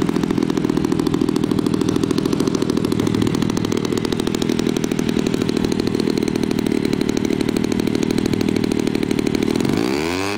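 Homelite 30cc two-stroke string-trimmer engine, converted to power a giant-scale RC model airplane and fitted with a larger Walbro carburetor and a Pitts-style muffler, running steadily with a fast, even rattle. Near the end its pitch dips briefly and picks back up.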